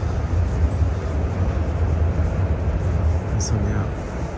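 Steady outdoor city rumble: a deep low drone with an even hiss above it, the background noise of an open car park beside busy streets.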